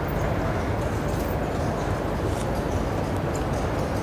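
Steady outdoor background noise with faint, scattered scuffs on the sanded ground.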